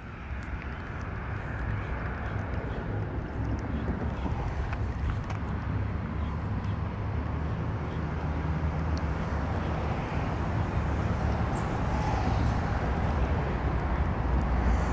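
Road traffic on the bridge: a steady rumble of passing cars that builds slowly, with a vehicle's engine hum coming up in the second half.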